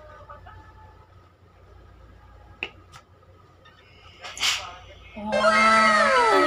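Two light clicks, then a short hiss of steam from a Black and Decker steam iron. Near the end comes the loudest part, a comic sound effect added in the edit: a low held tone under several falling whistle-like glides.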